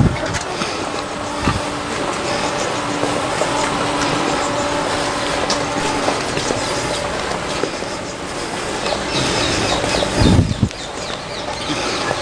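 Street traffic: cars driving past close by, with a steady engine hum for a few seconds. A single low thump comes about ten seconds in.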